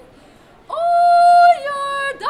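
A woman's unaccompanied operatic singing voice. After a brief pause, about two-thirds of a second in, she holds a high, steady note, then steps down to a lower note near the end.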